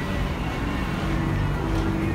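Street background noise: a steady low rumble of traffic.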